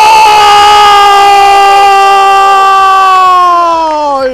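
A football commentator's drawn-out goal call: one long shout held at full voice on a single vowel, its pitch sinking slowly toward the end.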